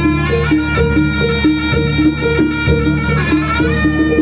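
Live East Javanese jaranan gamelan music: a shrill, reedy wind instrument plays a wavering, sliding melody over a quick repeating two-note metallophone figure, with drums and a steady low gong drone.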